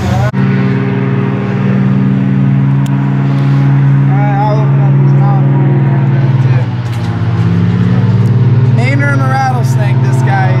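A loud, steady low motor hum that runs throughout, dipping briefly about two thirds of the way in, with people talking faintly in the background.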